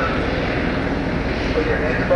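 Distant, indistinct voices over a steady low engine drone.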